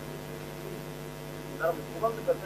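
A steady low electrical hum fills a pause in speech, with faint voices coming in near the end.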